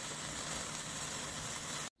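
Two handheld wire sparklers burning with a steady fizzing hiss, which cuts off suddenly near the end.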